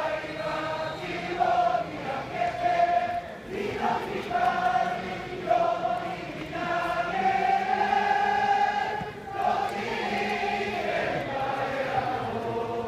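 Football supporters in the stands singing together in unison, a slow melody of long held notes from many voices.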